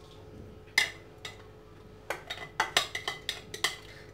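Spoon knocking and clinking against a bowl as quiche filling is scraped out: a sharp knock just under a second in, then a quick irregular run of taps in the second half.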